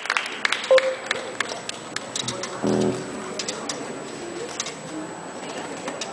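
Sparse, quiet playing from a drums, electric guitar and keyboard trio: a run of light drumstick ticks, dense at first and then spaced out, with one short pitched chord about halfway through.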